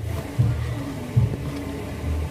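Low rumbling bumps and rustle of handling noise on the recording device's microphone.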